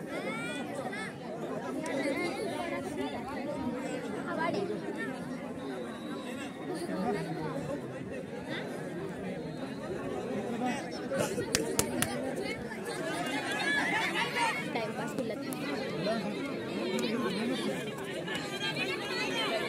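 Crowd of spectators chattering: many overlapping voices at once. A few sharp clicks stand out a little past the middle.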